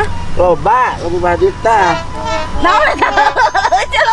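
Animated voices exclaiming and talking over each other, their pitch rising and falling sharply, over a steady low hum.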